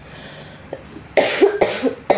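About a second in, a person coughs twice in quick succession.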